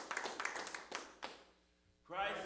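Hands clapping, several irregular claps a second, dying away about a second and a half in.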